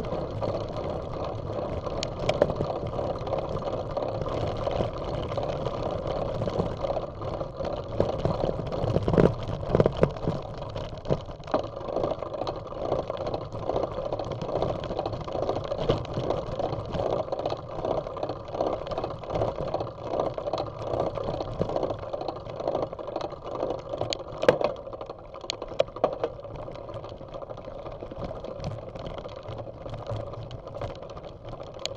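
Bicycle rolling up a dirt and gravel trail: a steady rough rumble of tyres on the loose surface, with rattling and a few sharper knocks as the bike goes over bumps, clearest about 2 s in, around 9 to 10 s and near 24 s.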